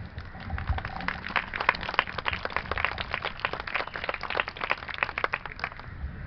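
Audience applauding: many irregular hand claps that start about half a second in and die away near the end.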